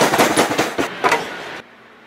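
Rapid clattering knocks and bangs from a metal vending machine cabinet being shifted and handled, stopping about one and a half seconds in.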